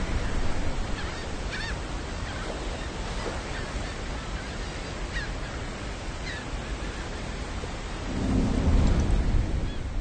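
Steady rushing noise of water with a few faint, short chirps; a deeper rumble swells up about eight seconds in.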